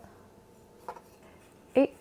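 Quiet kitchen room tone with one short, faint tap about a second in, as a chef's knife trims raw chicken breast on a plastic cutting board.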